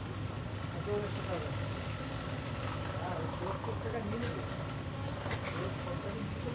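Faint, indistinct voices over a steady low rumble, with a few light clicks near the end.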